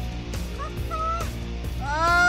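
Excited, high-pitched shouting voices: a short "aah" about a second in, then a longer cry that rises in pitch near the end, over a steady low hum.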